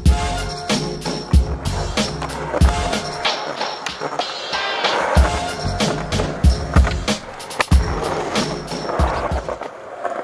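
Backing music with a steady beat. Over it, skateboard wheels roll and scrape along a concrete ledge around the middle. The music cuts off just before the end.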